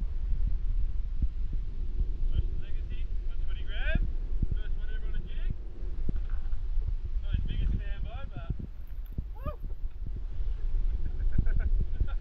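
Wind buffeting the microphone on an open boat: an uneven low rumble with gusty thumps throughout. Faint voices are heard over it in two stretches, in the first half and again just before two-thirds through.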